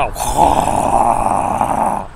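A man making a harsh, rasping noise with his voice for nearly two seconds, cutting off suddenly.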